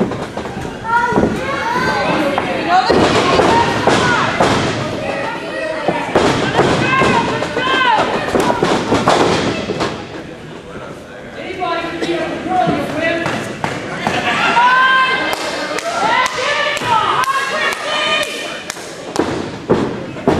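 Repeated heavy thuds of wrestlers' bodies and feet hitting the wrestling ring's canvas mat, mixed with people shouting.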